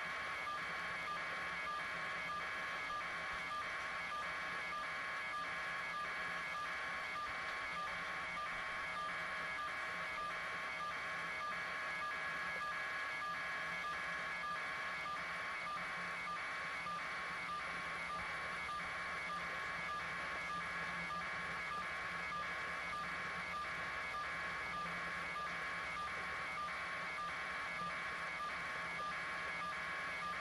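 An electronic signal tone on a live news feed's audio channel: a block of beeping tones pulsing on and off at an even rate, more than once a second, over a steady high tone.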